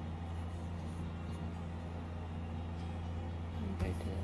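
A steady low mechanical hum, with a brief knock near the end.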